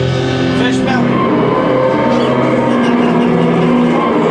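Loud distorted electric guitars from a live rock band: a held chord breaks off about a second in with a short downward pitch slide, followed by sustained, noisy guitar tones.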